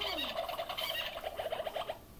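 A children's push-button sound book playing a recorded animal call: one rapid, warbling call lasting about two seconds that starts and stops abruptly.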